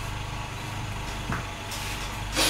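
A steady low hum, with faint scratching of tailor's chalk drawn across cotton print fabric and one light tap about a second and a half in.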